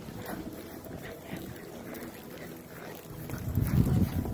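A horse and handler walking on soft arena dirt: faint irregular scuffing steps and rustle, with a louder low rumble building near the end.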